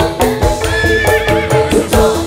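Live dangdut koplo band playing an instrumental passage: kendang hand drums beat a quick, steady rhythm under a keyboard melody, with a long held high note about a second in.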